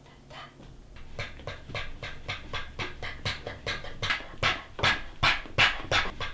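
A puppeteer's voice panting rapidly like a dog, about four breaths a second. It starts about a second in and grows louder.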